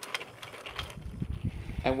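Wooden toy train rolling along wooden track: a low rumble with irregular light clicks from the wheels and track joints.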